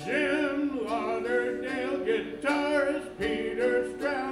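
Two men singing a slow melody in held notes with vibrato, with no clear instrument underneath.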